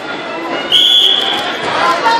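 A referee's whistle blows one short, high, steady blast about a second in, over people talking in the gym.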